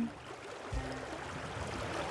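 River water running steadily, an even rushing wash, with a faint low tone coming in about three-quarters of a second in.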